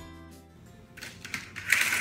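Background music fading out in the first half-second, followed by rustling and clattering noises, loudest near the end.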